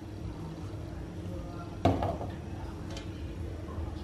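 Wok of melting sugar on a gas burner at full flame, with a steady low hum; about two seconds in, the metal wok gives one sharp knock with a short ring as it is shaken on the stove, followed by a couple of faint ticks.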